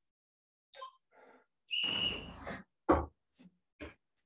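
Sounds of karate training picked up by microphones on a video call: a short hissing whistle about two seconds in, then two sharp thumps about a second apart near the end.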